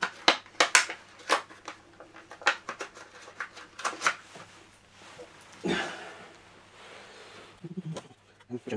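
Small plastic 3D printer kit parts and their packaging being handled: a quick run of sharp clicks and taps, then scattered taps, with a longer rustle about two-thirds of the way through.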